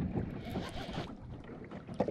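Wind buffeting the microphone and choppy water slapping against a small boat's hull, with the rustle of a baitcasting reel being cranked against a hooked fish.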